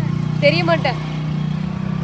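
Hero Splendor motorcycle's single-cylinder engine idling with a steady low hum.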